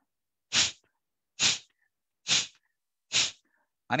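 A man's forceful exhalations through the nose with one nostril held shut by the thumb: four short, sharp puffs at an even pace, a little under a second apart, the pumping out-breaths of a single-nostril yogic breathing drill.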